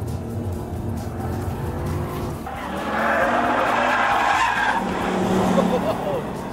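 Jaguar XK's V8 engine running under load, heard from inside the cabin. About two and a half seconds in, the tyres start squealing loudly for a couple of seconds as the car is cornered hard.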